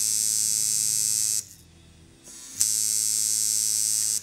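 Coil tattoo machine buzzing steadily under power from its supply, switched off by the power button about a second and a half in, then switched back on about a second later and buzzing again.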